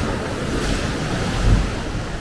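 Sea waves washing against a rocky shoreline, with wind buffeting the microphone. The rumble swells louder about one and a half seconds in.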